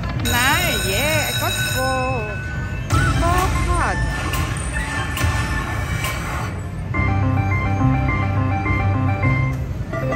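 Dragon Link Happy & Prosperous slot machine playing its electronic game music as its free-games bonus is won. Warbling, gliding tones come in the first few seconds, then a repeating melody of short notes from about seven seconds in, over a steady low background rumble.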